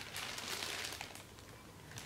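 Clear plastic bags crinkling as plastic-wrapped foam airframe parts are handled and lifted in a styrofoam box. It is louder in the first second, then fades.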